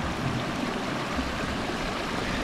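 Small hillside stream running close by: a steady rush of flowing water.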